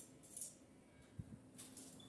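Faint, brief clinks and rustles of small objects being picked up from a tiled floor, with a soft knock about a second in.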